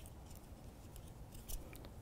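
Faint clicks and ticks of wooden knitting needles working garter-stitch rows, with one slightly louder click about one and a half seconds in.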